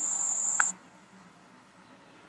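A steady high-pitched tone that cuts off suddenly under a second in, followed by faint room tone.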